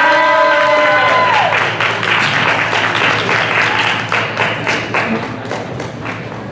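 Audience applause and cheering at the end of a song, with one long rising 'woo' from a single voice in the first second or so; the clapping thins out toward the end.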